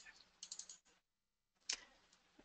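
Mostly near silence, with a few faint computer clicks in the first second and one sharper click near the end.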